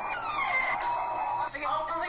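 A bright, bell-like electronic chime rings steadily for under a second near the middle, over voices.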